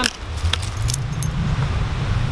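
Light metallic jingling, a few clinks in the first second or so, typical of the tags on a dog's collar as the dog moves about. It sits over a steady low rumble, with a brief rising squeak right at the start.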